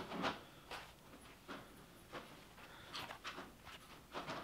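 Quiet handling noise: a few faint, scattered rustles and soft ticks as a mesh-back trucker cap is turned over in the hands close to the microphone.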